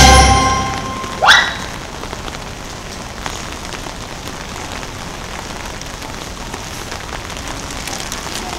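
The projection-mapping show's soundtrack music fades out, and about a second in a short rising whoosh sound effect sweeps up in pitch, the loudest sound here. After it comes a steady background hiss with faint scattered ticks.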